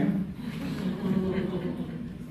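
A drawn-out wordless vocal hum with a buzzing quality that fades over about two seconds.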